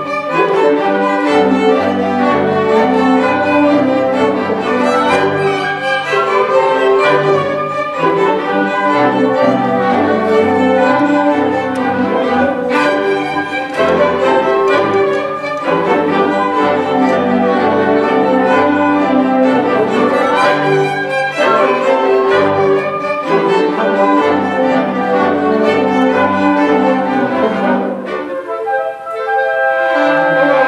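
Symphony orchestra playing classical music, with the violins and cellos carrying it. Near the end the full sound drops away for a moment, and held notes carry on.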